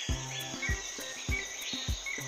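Quiet background music with a soft low beat and a few held notes, over a high, steady chirring layer.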